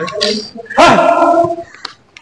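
A badminton player's short loud shout, "Ha!", during a rally, followed near the end by a short sharp click.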